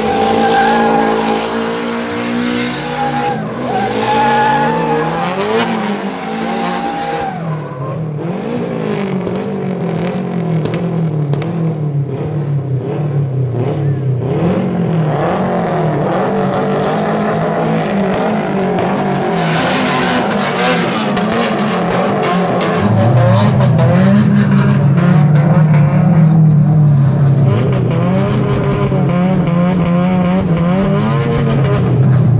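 Nissan S13 drift cars' engines revving up and down repeatedly as they drift, with tyres squealing and skidding. The engine note becomes louder and steadier from about two-thirds of the way in.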